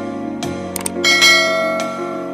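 Subscribe-button animation sound effect: two quick clicks, then a bright notification bell chime about a second in that rings on and fades, over steady background music.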